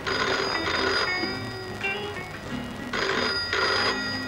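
Telephone bell ringing in two bursts, one at the start and another about three seconds in, over background music with low repeating notes.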